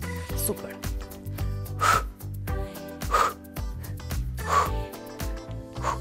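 Background workout music with a steady beat, over which a woman breathes out hard four times, about every second and a half, with the effort of an abdominal leg-lift exercise.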